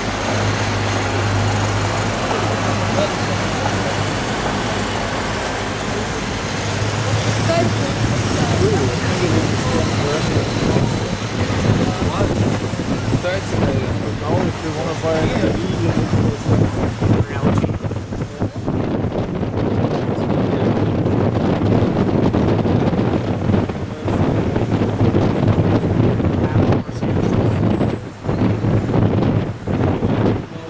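Steady city street traffic and the low hum of a sightseeing bus's engine, heard from the bus's open upper deck as it drives. In the second half the noise turns gusty and uneven, with wind buffeting the microphone.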